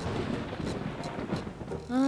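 Storm sound effect: heavy rain pouring steadily with a low rumble underneath. It starts abruptly.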